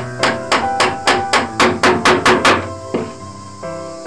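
A hammer driving a nail into a plywood board: about ten quick blows, roughly four a second, growing louder and stopping about two and a half seconds in. Background music plays underneath.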